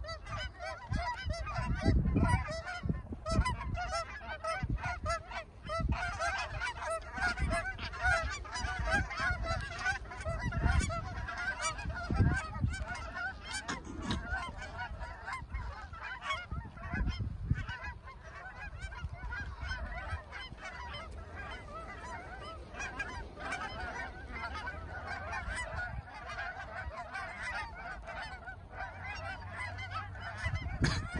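A flock of Canada geese honking in a dense, continuous chorus of overlapping calls as birds circle and land among others already on the ground. Low rumbles of wind buffeting the microphone come and go, mostly in the first half.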